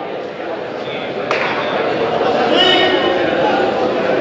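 Boxing ring bell struck once about a second in to open the first round, a sharp clang with a short ring, over the voices of spectators in a hall.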